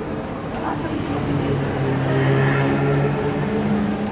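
A coach's diesel engine running close by: a steady drone with an even pitch that sets in about a second in and grows slowly louder.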